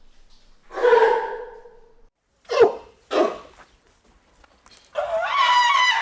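Sea lions barking in a pool: one longer bark about a second in, then two short barks. Near the end comes a longer, louder call with a wavering pitch, from a different animal.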